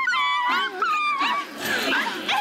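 High-pitched vocal cries from dancers: a long held call, then a run of short calls that swoop up and down. These are the shouted calls that accompany a traditional Kamchatka indigenous dance.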